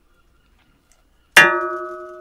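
Near silence, then about 1.4 s in a recorded audio sample plays from the iPad: a single sharp struck note with several bell-like tones that ring on and slowly fade.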